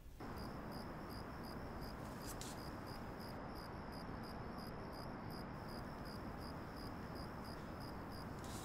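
A cricket chirping steadily, about three high chirps a second, over a low steady background hiss.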